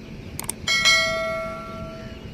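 Subscribe-button sound effect: a pair of quick mouse clicks, then a bell-like notification chime that rings and fades away over about a second.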